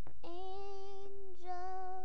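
A child's high voice singing two long held notes at nearly the same pitch, without words.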